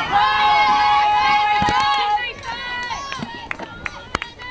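Several high-pitched voices yelling at once, one long shout held for about two seconds, then trailing off into scattered shorter calls and a few sharp clicks.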